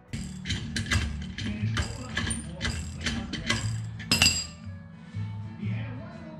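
Ratchet wrench clicking in short strokes, about two or three a second, as it turns a homemade hub puller on a drum-brake rear axle. The clicking is loudest about four seconds in and stops soon after. Background music plays throughout.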